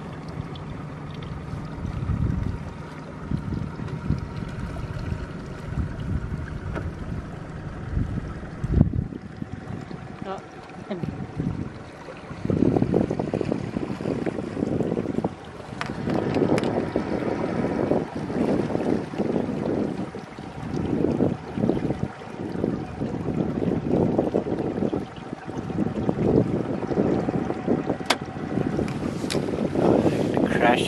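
Yamaha outboard motor on a small aluminium boat running steadily under way, a constant hum, with gusts of wind buffeting the microphone.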